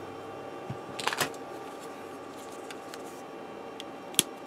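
A short cluster of small plastic clicks about a second in, with one faint click near the end, as plastic model kit parts are handled and fitted, over quiet room tone.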